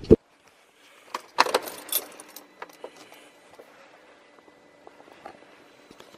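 Car keys on their ring jangling and clicking against the dash as the ignition key is handled and turned, loudest about a second and a half in, with a brief thump at the very start.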